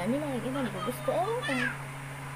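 A woman's voice making drawn-out, sing-song vocal sounds without clear words, the pitch rising and falling in a few arcs.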